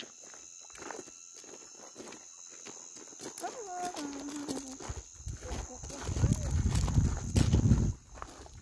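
Footsteps crunching on a gravel path in a steady walking rhythm, with wind rumbling on the microphone over the last few seconds.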